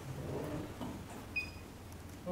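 A small click and then one short, high electronic beep about one and a half seconds in: a studio flash unit's beep, the sound that tells it has recycled and is ready to fire.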